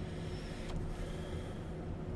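Steady low electrical hum and room noise, with one faint click a little under a second in.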